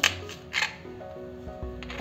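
Kitchen knife slicing through green chillies and striking a plastic cutting board: a few sharp taps, the loudest about half a second in, over soft background music.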